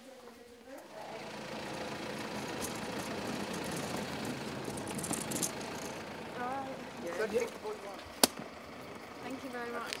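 A car engine idling steadily beside the listener, with a single sharp click a little after eight seconds in.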